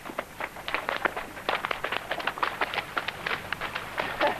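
Water splashing as bottlenose dolphins swim fast along the surface of the pool: a quick, irregular run of short slaps and splashes.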